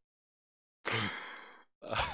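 A man's long, breathy sigh about a second in, followed near the end by a second, shorter breath, as he lets out air while winding down from laughing.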